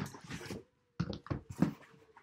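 Paper mailer packaging rustling and crinkling in two spells of quick, sharp crackles as it is pulled open and shaken to get a book out.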